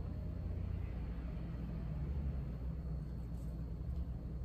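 Steady low background rumble with a faint hiss; no distinct event stands out.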